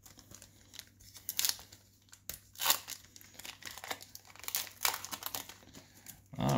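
Foil wrapper of a trading-card pack crinkling and tearing as it is opened by hand, in irregular crackles, the loudest about two and a half seconds in.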